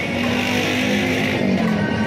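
A motor vehicle's engine running close by, over steady background pop music.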